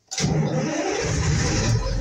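Ural truck's diesel engine cranked on the starter and starting up, beginning suddenly just after the start. It is a cold start after standing unused since January, with the fuel hand-primed beforehand.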